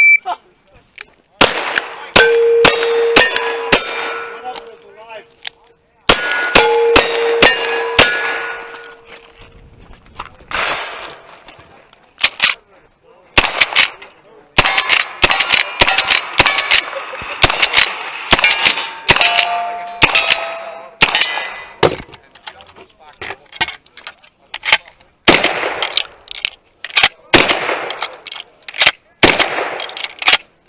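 A shot timer's short start beep, then a cowboy action stage string: dozens of gunshots in quick runs separated by short pauses. Many shots are followed by the ringing of struck steel targets.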